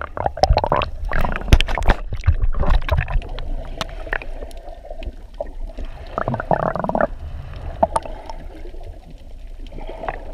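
Water sloshing and splashing in irregular bursts over a low rumble, with a short rough, buzzing sound about six seconds in.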